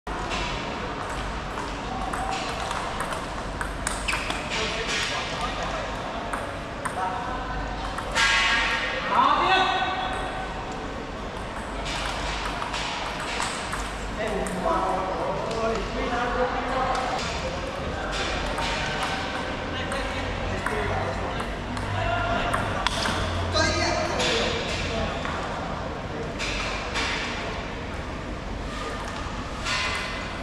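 Table tennis balls being hit back and forth in doubles rallies: a run of sharp clicks as the ball strikes the paddles and bounces on the table, pausing between points.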